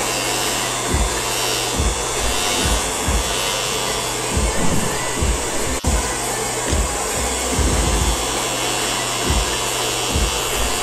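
Electric hair clippers buzzing steadily as they shave a head, over background music with a steady beat. The sound drops out briefly a little past halfway.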